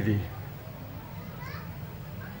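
The end of a man's loud voice falling in pitch in the first moment, then faint background voices of a gathering, children among them, over a steady low hum.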